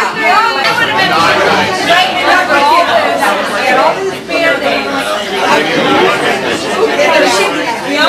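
Many people talking at once in a packed room: a steady babble of overlapping voices with no clear words and no pauses.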